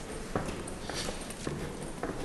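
Footsteps climbing a flight of indoor stairs, about two steps a second, each a short hard knock.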